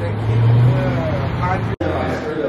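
Street traffic: a steady low engine rumble from road vehicles, with faint voices mixed in. The sound drops out for an instant near the end, and the rumble does not return.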